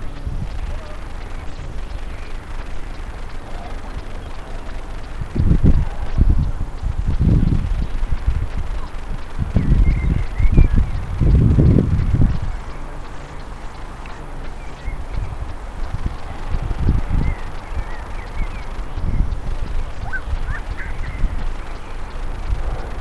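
Wind buffeting a head-worn camera's microphone in uneven gusts, strongest from about five to twelve seconds in, with a few faint bird chirps above it.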